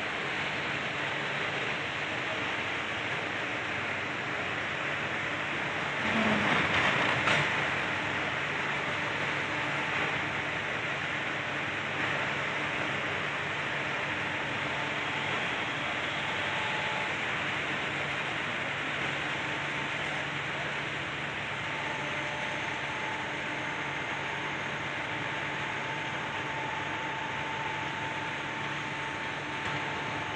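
Electric motor and hydraulic pump of a crane's power pack running steadily with a low hum and a faint whine. About six to seven seconds in, a louder rush of noise ends in a sharp knock.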